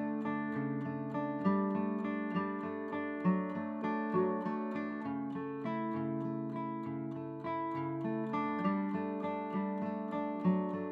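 Background music: acoustic guitar, plucked and strummed, with regular accents about once a second.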